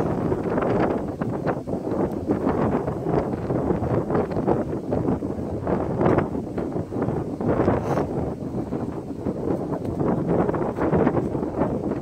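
Wind buffeting the microphone: a continuous rough rushing with irregular gusts.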